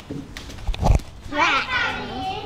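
A dull low thump about a second in, followed by a short high-pitched wordless cry from a child's voice, rising and falling in pitch.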